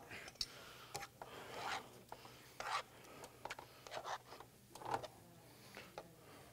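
Metal tongs scraping and clicking against a skillet as pasta is lifted and served: a few faint, irregular scrapes and taps.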